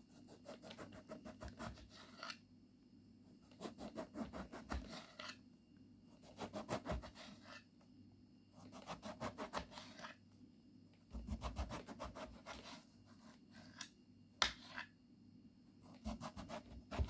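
A thin kitchen knife sawing through a whole eggplant, slice after slice. There are five bursts of quick back-and-forth strokes, each a second or two long, with short pauses between them, and one sharp tap near the end.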